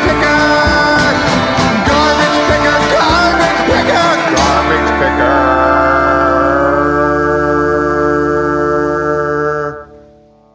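Southern Gothic country band's song ending: the full band plays busily for about four seconds, then lands on a final chord that is held and rings out before cutting off sharply near the end.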